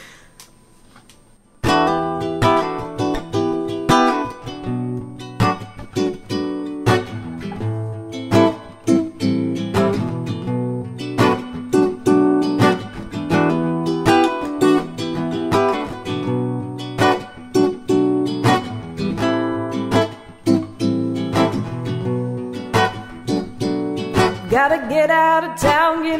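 Solo acoustic guitar intro: chords strummed and picked in a steady rhythm, starting about a second and a half in after a short hush. A woman's singing voice comes in near the end.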